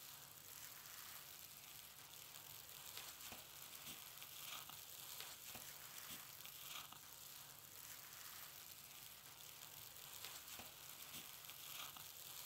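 Near silence: a faint, even hiss with scattered soft crackles.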